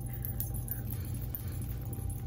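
Faint light jingling of beaded bracelets on a wrist as the hand dabs a beauty sponge against the face, over a steady low hum.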